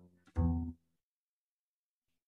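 Double bass playing the last two notes of a descending walking line that outlines a ii–V–I progression in C major. The final note stops within the first second, and nothing follows.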